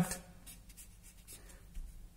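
Faint scratching of a felt-tip marker drawing lines on paper.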